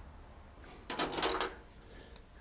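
Thin wooden strips knocking and clicking against each other as one more is laid down alongside the others, a short cluster of light, slightly ringing clacks about a second in.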